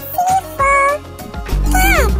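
A domestic cat meowing several times, ending with a long falling meow, over background music with a bass beat.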